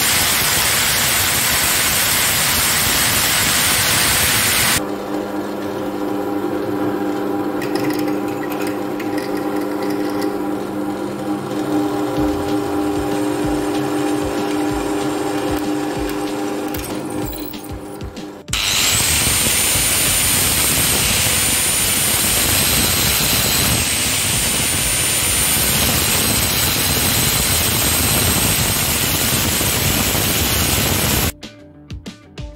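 Angle grinder cutting steel held in a vise, a loud rushing noise. About five seconds in it stops and a drill press runs with a steady hum of several tones while drilling, and about eighteen seconds in the angle grinder starts cutting again with a high whine over the noise.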